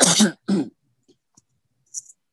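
A person clearing their throat, two short harsh bursts in quick succession.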